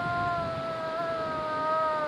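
A hunter's cow moose call made by voice through cupped hands: one long, held call whose pitch sinks slowly.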